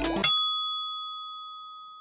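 An upbeat outro jingle cuts off about a quarter second in on a single bright bell ding, which rings on and fades slowly.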